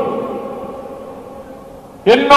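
A pause in a man's speech over a microphone in a large hall: the reverberation of his amplified voice dies away slowly into faint room tone.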